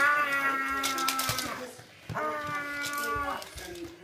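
A voice making two long, steady held calls, like a play animal noise: the first lasts about a second and a half, the second, after a short gap, just over a second.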